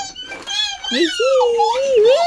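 A small child's high-pitched wordless vocalising, a whiny, meow-like sound that rises and falls in pitch.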